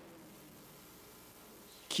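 Near silence in a pause in a man's speech. The echo of his last words dies away at the start, and his voice starts again right at the end.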